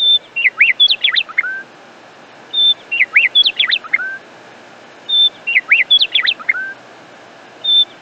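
Bird song: a short high whistle followed by a quick run of sweeping chirps that ends on a lower note. The same phrase repeats about every two and a half seconds.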